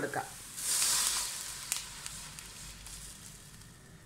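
A cup of water poured into a hot wok of oil and chopped onions, bursting into a loud hiss about half a second in that dies down to a fading sizzle.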